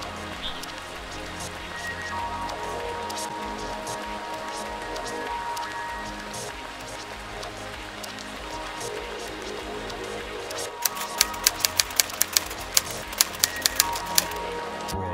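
Background music with steady held notes. Near the end comes a quick run of about a dozen sharp clicks, about four a second.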